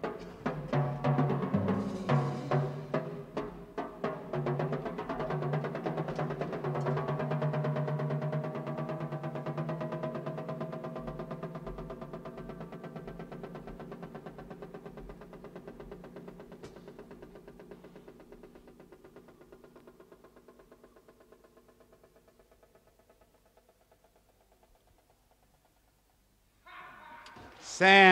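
Jazz drum kit solo: a few sharp strikes, then a fast, sustained roll on a tom-tom with a steady low pitch that dies away slowly over some twenty seconds to near silence. Audience applause breaks out just before the end.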